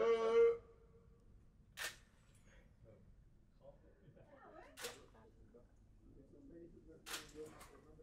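DSLR camera shutter firing single shots: a sharp click about two seconds in, another about three seconds later, then a third near the end followed quickly by a couple of fainter clicks.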